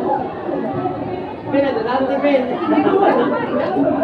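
Several people talking at once: overlapping chatter of voices throughout, with no one voice clear.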